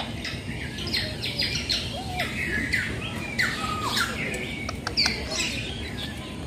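Several birds chirping and calling in a busy, overlapping mix of short high calls, several a second, with a few sharp clicks among them.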